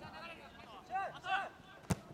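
Football players shouting out on the pitch, two loud high calls about a second in, then a single sharp thump of the ball being kicked hard near the end.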